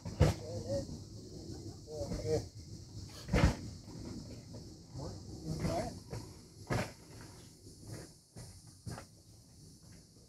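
Field recording of a cricket chorus played back over loudspeakers: a steady, high-pitched, electric-sounding buzz. Several sharp knocks and some low wavering sounds stand out over it, the loudest knock about three and a half seconds in.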